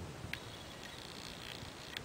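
Quiet room tone: a faint steady hiss with a thin high-pitched tone, and two small clicks, one early and one near the end.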